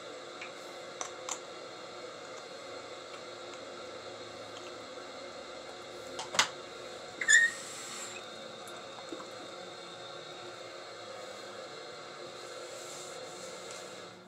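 Bathroom tap running steadily into the sink, stopping at the very end. A few sharp knocks cut through it, the loudest about six and seven seconds in.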